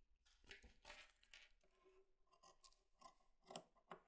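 Fabric scissors cutting through woollen knitted fabric in a series of faint, short snips, the loudest a little past three and a half seconds in.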